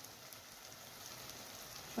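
Faint, steady sizzling and fine crackling of grated onion frying in oil and butter in a pot.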